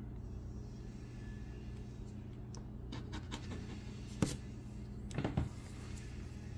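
A steady low hum, with a few short clicks about four seconds in and again a little after five seconds.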